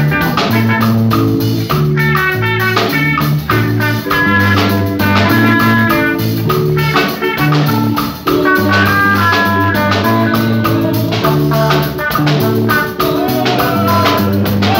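Live band playing up-tempo instrumental music: electric bass line, drum kit and congas keeping a steady beat, and quick high melodic runs on top.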